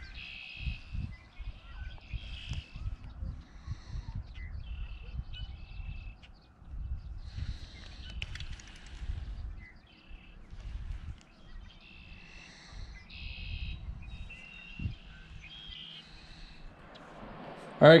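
Birds chirping and calling over and over in short high calls, with gusts of wind rumbling on the microphone.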